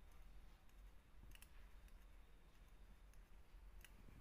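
Near silence: a few faint clicks of metal knitting needles knocking together as stitches are knitted.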